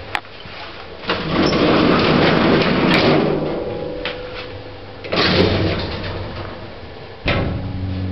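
Vintage 1940s lift's gate and doors being worked by hand: a click, then a long rattling slide of about three seconds that fades out, and a second shorter slide about five seconds in. A clunk comes near the end as a door shuts, and after it a steady low hum is louder.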